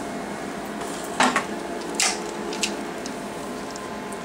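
Steady hum of the 2007 Alma Harmony laser console running in ready mode. A few sharp clicks and knocks come over it, the loudest about a second in and two seconds in.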